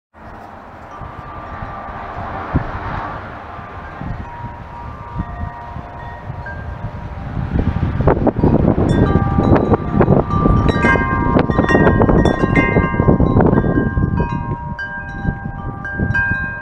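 Large wind chimes with long metal tubes ringing as the wind swings the striker into them, the strikes coming thicker about halfway through. Wind gusts rumble on the microphone, loudest in the second half.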